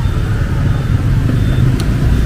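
Steady low rumble of motorbike engines.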